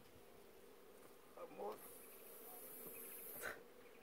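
Honey bees buzzing faintly around their opened nest, a steady low hum, with a soft high hiss for a couple of seconds in the middle.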